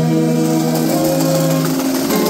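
Brass band playing, with tubas and other brass holding long chord notes; the lowest note stops shortly before the end while the higher notes carry on.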